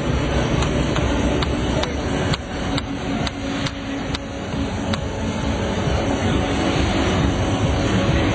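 Small combat robots driving in an arena: a steady mechanical rumble with a run of sharp knocks and clatters, roughly two a second, that stop about five seconds in.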